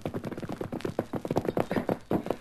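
Radio-drama sound effect of a horse's hoofbeats, a rider coming in at a fast gait, heard as rapid, irregular hoof knocks.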